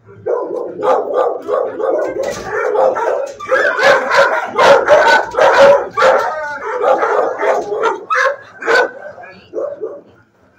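Dogs barking in shelter kennels, one bark after another with little pause, loudest in the middle and thinning out near the end.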